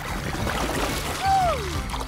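Water spat out in a stream and splashing on the surface, a hissing spray, followed by a single falling pitched tone in the second half.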